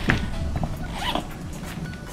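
Zipper on the lid pouch of a soft, neoprene-covered camera carrying case being pulled open, with short rasping pulls and handling clicks, the strongest about a second in.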